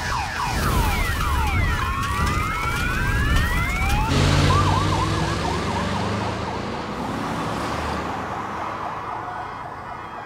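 Police sirens wailing, several at once with overlapping rising and falling pitches. About four seconds in, a single fast warbling siren takes over above a vehicle's low engine rumble, and the sound slowly fades toward the end.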